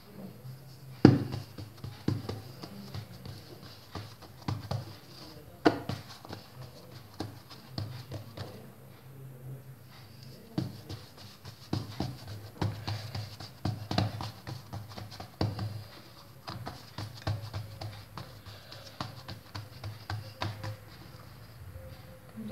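Hands pressing and spreading filling over a round of bread dough on a stone countertop: scattered light taps and pats, with the odd sharper knock on the counter, over a steady low hum.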